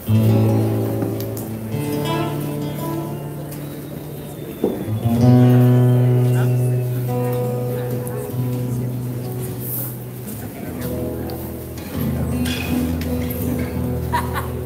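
Live instrumental Argentine folk music accompanying a malambo: guitar with long-held low chords that change every few seconds. There is a sharp knock just before five seconds in, and the music swells right after it.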